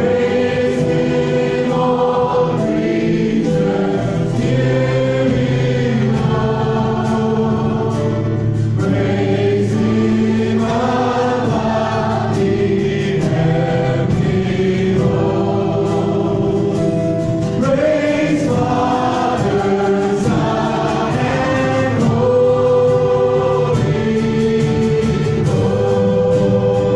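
A live worship band playing a song: male and female voices singing over acoustic and electric guitars and a drum kit.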